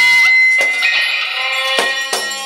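Freely improvised ensemble music: long held tones with many overtones, struck through by a few sharp percussion hits, the clearest about half a second in and near the end.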